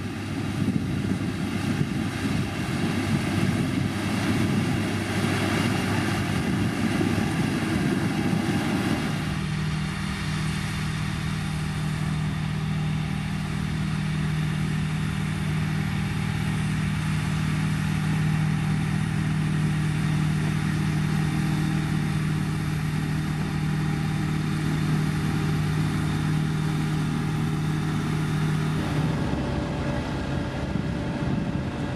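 Diesel engine of a LiuGong motor grader running under load as its front blade pushes gravel, a rough low rumble. About nine seconds in the sound changes to a steadier engine drone with a constant low hum, which shifts again just before the end.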